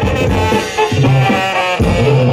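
Live Mexican banda music played loud through the stage speakers: a brass section over a tuba bass line and drums, in a steady dance number.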